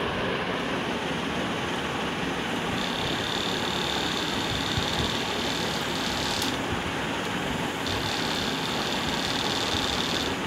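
Small brushed DC can motor running off a 5 V transformerless capacitive-dropper supply: a steady whirring with a thin high whine that comes in about three seconds in, drops out for a moment, and returns.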